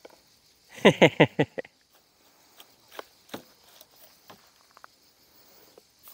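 A person laughs briefly about a second in, four quick falling syllables. After it come a few light scattered clicks and rustles, over a steady high-pitched chirring of insects.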